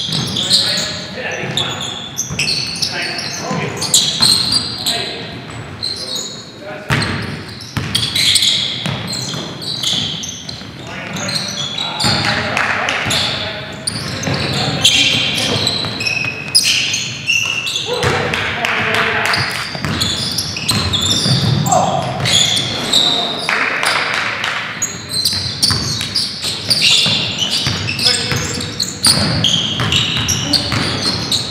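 Basketball being dribbled and bounced on a hardwood gym floor during a game, with players' voices calling out, echoing in a large gymnasium.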